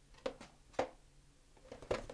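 A cardboard product box being handled and put back on a shelf, making a few short soft knocks and scuffs: two near the start, one just before the middle and a quick cluster near the end.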